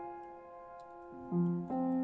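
Upright piano played softly: a held chord dies away, then new low notes and a chord come in just past halfway.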